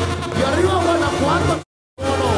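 A live brass banda plays, with trumpets, trombones and a sousaphone bass line, while a voice calls out over it with a wavering, gliding pitch. The sound cuts out completely for a moment near the end and then comes back.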